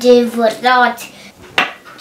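A child's voice in the first second, then a sharp wooden click about one and a half seconds in as the painted wooden nesting doll's hollow halves knock against each other while it is taken apart.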